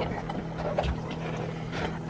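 Steady rush of strong wind on the microphone, with a faint low hum under it.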